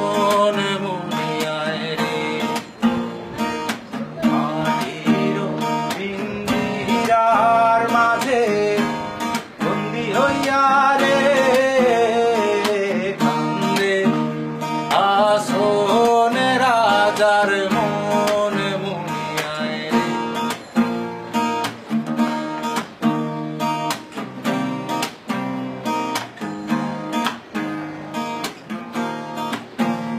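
Acoustic guitar strummed and picked while a man sings a melody over it. From about twenty seconds in the voice drops out and the guitar carries on alone with regular sharp strums.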